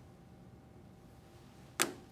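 Faint room tone, broken near the end by a single short, sharp click from handling the balloon catheter and its flushing gear.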